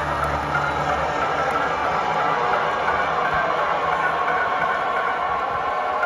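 Live electronic music in a beatless, droning breakdown: a rumbling, noisy wash with faint held tones, the low bass dropping away about a second and a half in.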